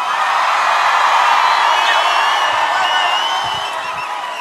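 A large festival crowd cheering and screaming, with shrill shrieks and whistles rising above the mass of voices; it eases a little near the end.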